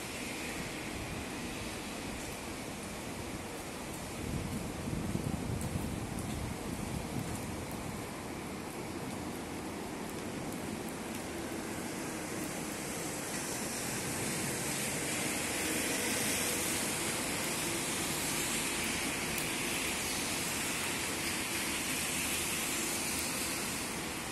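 Steady outdoor background hiss with no distinct events. A low rumble swells briefly about four seconds in, and a brighter, higher hiss builds from about the middle onward.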